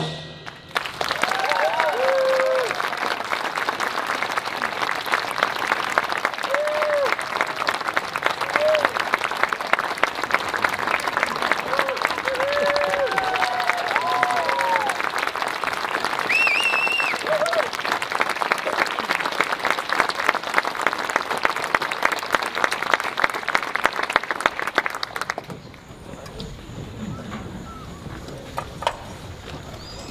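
Audience applauding after a brass band piece, with a few whoops and cheers over the clapping. The applause stops fairly suddenly near the end, leaving a quiet murmur.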